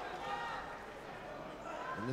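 Crowd murmur in a hall, with faint shouted voices from around the cage.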